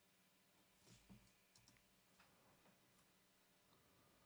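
Near silence with a handful of faint computer mouse clicks, grouped about one second in and again around two and three seconds in, over a low steady hum.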